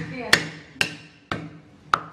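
Cleaver chopping lemongrass stalks on a wooden cutting board: four sharp knocks about half a second apart, each with a short ring.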